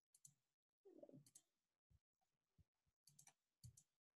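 Faint computer mouse clicks: a handful of short clicks, some in quick runs of two or three, with silence between them.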